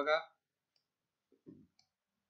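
A man's voice ends a word, then near silence broken by a few faint clicks about a second and a half in.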